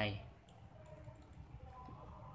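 A few faint, scattered clicks of a computer mouse, after a short spoken word at the very start.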